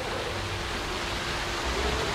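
Water pouring steadily from a backyard pool's rock waterfall into the pool, an even splashing rush, with a faint steady hum beneath it.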